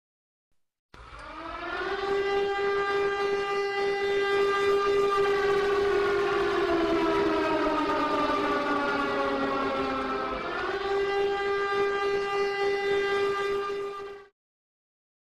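Air-raid siren wailing. It winds up in about the first two seconds and then holds a steady pitch. A second tone slides slowly downward and rises back up about ten seconds in. The sound stops abruptly at the end.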